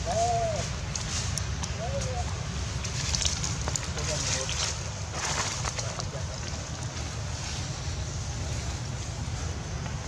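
Short, arching coo calls from a long-tailed macaque: one right at the start, another about two seconds in, and fainter ones near four seconds. Under them runs a steady low rumble of wind on the microphone, and a brief rustling noise comes around three to five seconds in.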